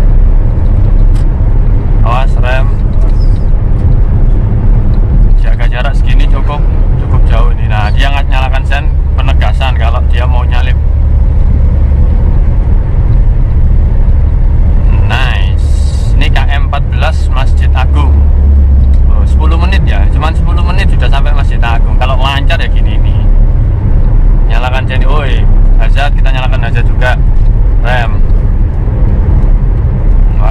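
Steady low engine and road rumble inside the cabin of a 2014 Suzuki Karimun Wagon R cruising at highway speed. A person's voice comes and goes over it.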